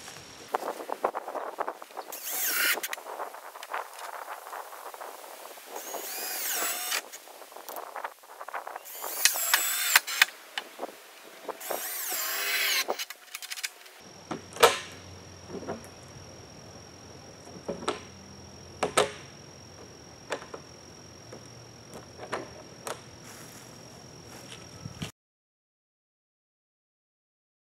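Cordless screw gun driving screws into hardware on a plastic barrel lid, in about four short bursts of a second or so each. After a cut come a few sharp clicks and knocks.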